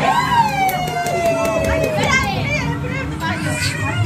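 Several women and children talking and exclaiming at once. One high voice is drawn out in a long falling call over the first two seconds. A short run of sharp clicks comes about a second in.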